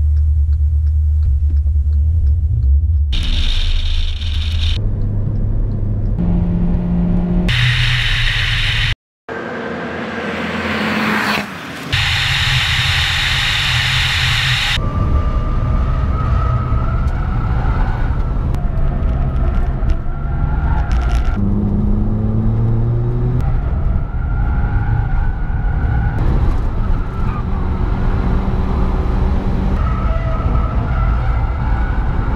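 Hyundai Avante AD Sport's engine heard from inside the cabin, with a heavy low rumble at first, then pulling hard, its pitch climbing again and again through the gears, mixed with road and wind noise. The sound drops out briefly about nine seconds in.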